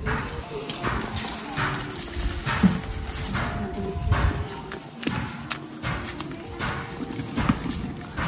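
Footsteps on a dirt and leaf-littered path, a run of irregular scuffs and knocks, with faint steady tones underneath.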